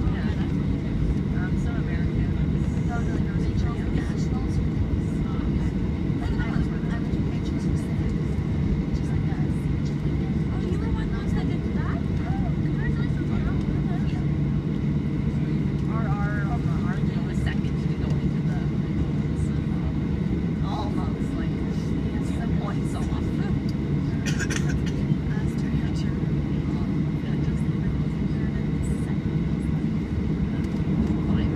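Steady cabin noise of a Boeing 737 taxiing, its jet engines at low thrust giving an even low rumble, with faint voices in the background.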